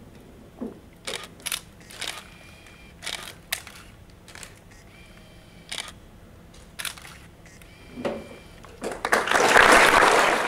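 Scattered camera shutter clicks, a dozen or so at irregular intervals, some in quick pairs. About nine seconds in, loud applause breaks out.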